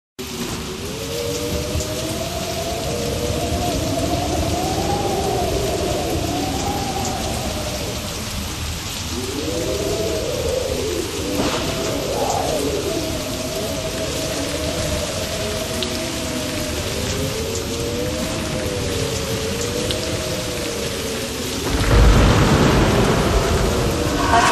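Recorded rain with thunder, a steady hiss, with wavering tones sliding up and down through it. A loud, low rumble comes in about 22 seconds in.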